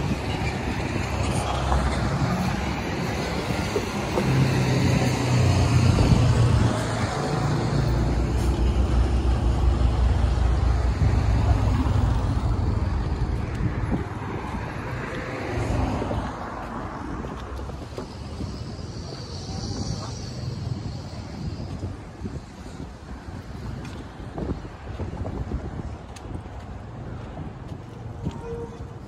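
Road traffic driving past on the bridge roadway: cars and trucks go by in a rumbling swell that is loudest in the first half. The traffic then fades to quieter road noise.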